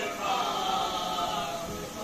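Men's voices chanting a marsiya (Urdu elegy) together, without instruments: a lead reciter at the microphone with several others singing along in long, held, gliding notes.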